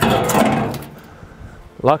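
A shovel set down in an empty wheelbarrow: a knock, then a rattling scrape that fades within about a second.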